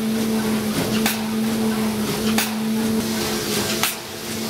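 Automatic premade-pouch (doypack) packing machine running: a steady hum with a short, sharp sound repeating about every second and a half as the machine cycles, three times.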